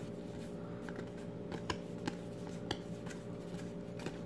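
Trading cards being handled and flipped through in the hand: faint, scattered clicks and slides of the card stock over a steady low hum.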